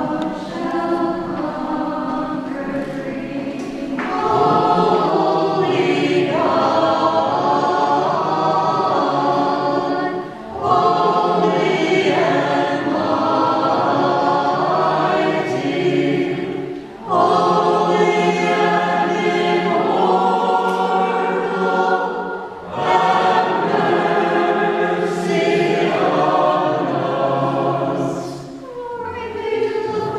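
Choir of nuns' voices singing a hymn, softer at first and fuller about four seconds in, in phrases of roughly six seconds with brief breaks between them.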